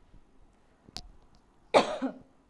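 A woman coughs sharply near the end, a short, loud cough. A faint click sounds about a second earlier.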